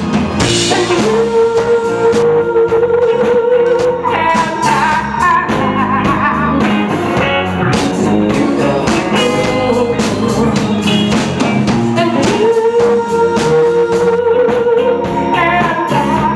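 Live blues-rock band playing: a woman sings over electric guitar and drums, with several long held notes.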